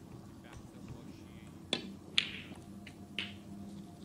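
Snooker balls clicking: a sharp click of the cue tip striking the cue ball, then two more clicks of balls colliding, half a second and about a second and a half later.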